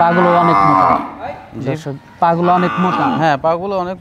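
Cattle mooing: one long, loud moo through the first second, with more calling a little after two seconds in.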